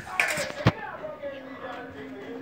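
People talking quietly in the background, with one sharp click or knock less than a second in.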